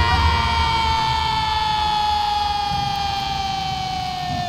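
A siren's long wail: one steady tone sliding slowly down in pitch and getting gradually quieter.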